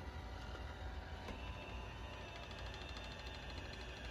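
iRobot Roomba J7 robot vacuum running, a faint steady mechanical hum.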